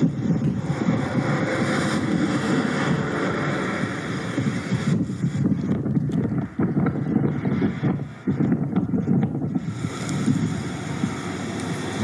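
Wind buffeting a police body camera's microphone beside a highway, a loud, steady rumbling noise mixed with road traffic. The higher hiss thins out in the middle and returns near the end.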